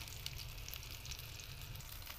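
Prawn fritters frying in hot oil in a metal wok: a steady, faint sizzle with fine crackles.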